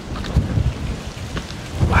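Strong, gusty wind buffeting the microphone: a low rumble that swells about half a second in and builds harder near the end.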